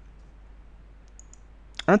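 A few light clicks on a computer keyboard, the last and sharpest near the end, over a low steady hiss.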